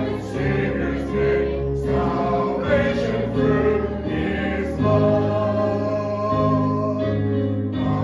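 Church congregation singing a hymn together, in long held notes.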